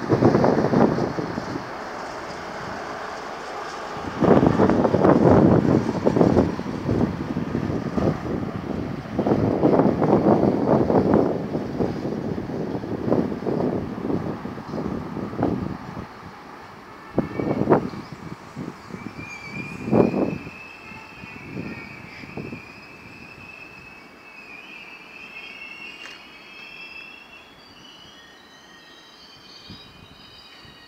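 Intercity train rolling into a station, heard from on board: loud uneven clatter of wheels over points and rail joints, with a few sharp knocks. About two-thirds of the way through, the train slows toward a stop and the noise fades under a wavering high-pitched squeal.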